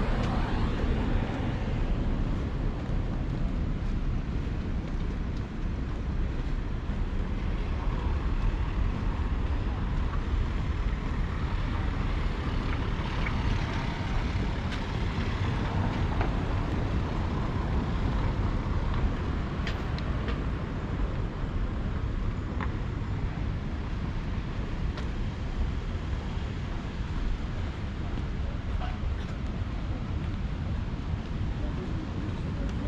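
Steady outdoor street ambience: a low rumble of distant road traffic with an even background hiss.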